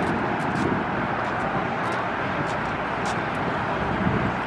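Steady outdoor traffic noise from cars on the road and parking lot.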